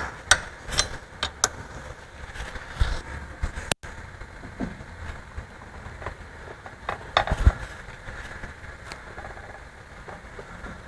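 Scattered metal clicks and clunks from a pellet mill's roll assembly and die as a roll adjustment is backed off and the die is turned by hand, with a steady low hum underneath. The loudest knocks come about seven seconds in.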